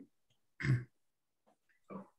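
A person clearing their throat once, briefly, about half a second in; otherwise quiet.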